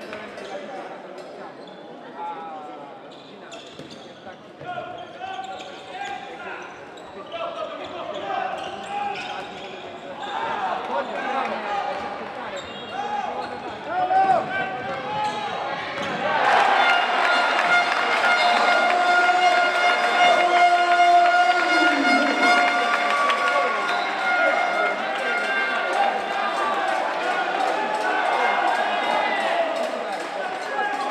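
A handball being bounced on an indoor court floor, with players' voices. About halfway through, a louder steady pitched sound joins in.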